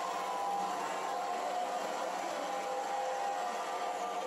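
Large industrial horizontal bandsaw cutting through a steel RSJ beam under coolant: a steady, even machine noise with a few held tones.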